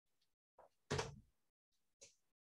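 A single thump about a second in, with a fainter short knock just before it.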